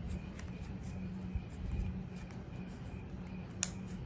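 Small clicks and taps of hands handling a tobacco pipe while it is emptied and repacked, with one sharper click about three and a half seconds in, over a steady low hum.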